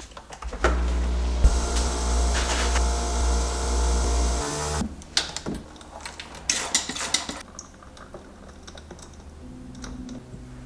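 Capsule coffee machine closed and set running: a click as the lid shuts, then a steady machine hum for about four seconds that stops abruptly. After it, a few light knocks and clicks of things being handled on the counter.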